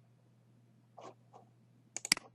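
Near silence over a low steady hum, with two faint soft sounds about a second in. Right at the end comes a sharp double click from a computer mouse.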